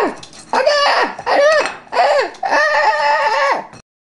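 A person's voice crying out in a run of about five high, arching yells, each rising and then falling in pitch. They cut off abruptly near the end.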